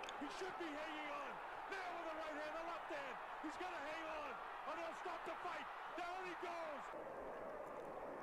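Faint boxing broadcast commentary by a male commentator, over the steady noise of an arena crowd.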